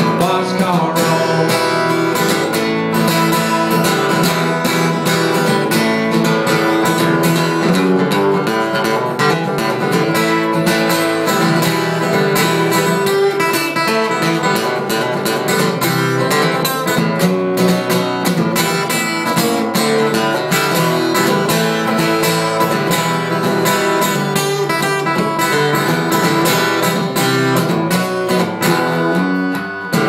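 Steel-string acoustic guitar strummed in a steady country rhythm, an instrumental passage with no singing.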